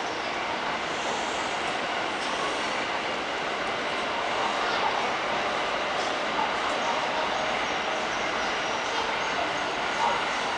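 Steady background noise of a busy indoor concourse, a wash of distant voices and machinery without any distinct event.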